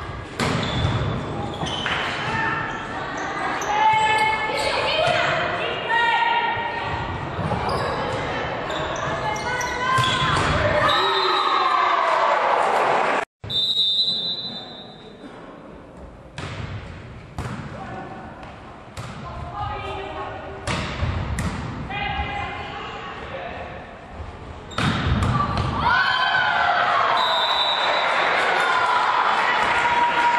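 Volleyball rally in a reverberant sports hall: players and spectators shouting and calling, with sharp thuds of the ball being struck and hitting the court floor. A whistle blows with a steady high blast about halfway through, just after the sound cuts out for an instant.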